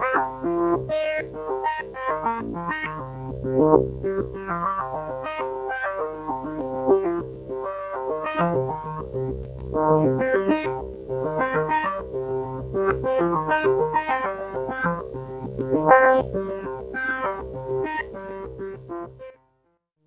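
Tesseract Radioactive Eurorack digital voice module playing a fast sequence of short synth notes, a few a second and changing in pitch. The notes fade and stop just before the end.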